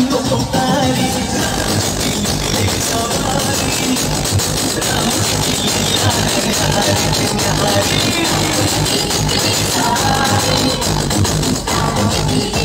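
Loud electronic dance music with heavy bass blasting from an outdoor DJ sound system, running at a steady level.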